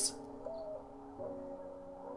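Mourning dove cooing, a sample within a song, heard faintly over soft music: a short low coo about half a second in, then a longer held coo from a little past one second.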